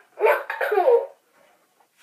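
Talking toucan toy playing back a short recorded sound in its high-pitched voice for about a second, then going quiet.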